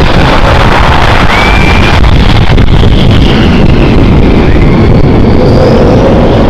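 F-16 jet engines running as the jets taxi: a loud, steady noise with short rising whines now and then.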